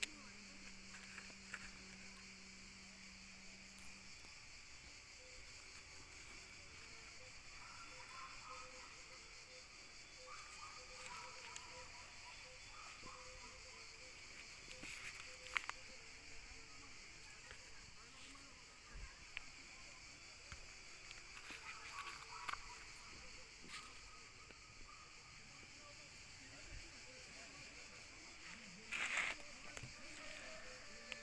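Near-quiet background: a steady faint high hiss with scattered light clicks and rustles, and a short louder rustle near the end.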